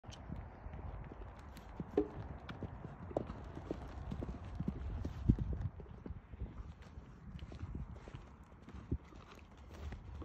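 Hoofbeats of a pony cantering on a soft dirt arena: a run of dull, irregular thuds, loudest about halfway through as it passes close.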